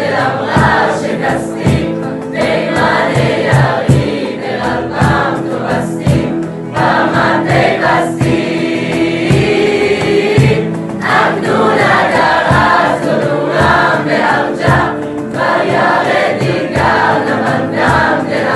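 A mixed choir of Israeli army conscripts, men and women, singing an Iranian song over a steady low beat, with one long held note about halfway through.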